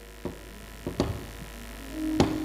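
A few short, sharp knocks, one about a quarter-second in and two close together near the one-second mark, over a steady low mains hum.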